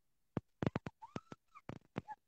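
A girl's brief excited squeaks and stifled giggling, mixed with a run of sharp clicks and knocks close to the phone's microphone.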